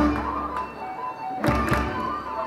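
A live folk band playing a polka: a held melody, with sharp beats at the start and twice in quick succession about one and a half seconds in.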